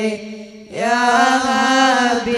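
Islamic devotional chanting of salawat, a voice drawing out long melodic notes. It drops out for a breath shortly after the start and comes back within about half a second on a new held phrase.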